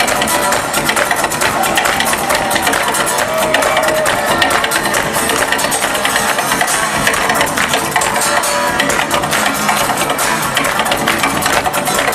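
Acoustic guitar duo playing fast, with dense, driving strumming and many quick percussive strokes.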